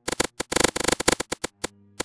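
Crackling: a dense run of sharp pops and crackles about half a second in that thins out to scattered pops, over a faint low hum.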